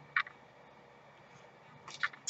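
Quiet room with one short, sharp rustle about a fifth of a second in and a softer rustle near the end, from a paper insert card being handled and set down.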